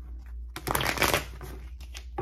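Tarot deck being shuffled by hand: a dense burst of cards sliding and flicking against each other about half a second in, lasting about half a second, with a few lighter card flicks near the end.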